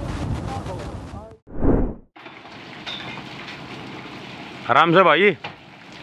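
Voices and outdoor noise that break off about a second in, then a short loud low burst of sound. After it comes steady background hiss, and a person laughing loudly near the end.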